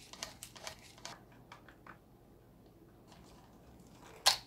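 Faint clicks and taps of the front drive shafts of a Traxxas Slash 4x4 RC truck being worked into place, several in the first second and a couple more soon after, then near silence.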